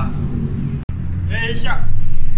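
A man's voice talking over a steady low rumble of road traffic. The sound drops out abruptly for an instant just under a second in.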